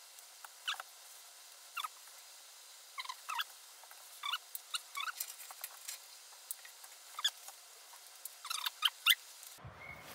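Nylon webbing straps of a shoulder-mount harness squeaking and scraping through plastic buckles and slides as they are pulled and adjusted. The short squeaks come irregularly, a dozen or so, with a few small clicks among them.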